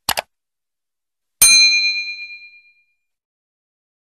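Subscribe-animation sound effects: a quick double mouse click, then about a second and a half in, a single bright notification-bell ding that rings out and fades over about a second and a half.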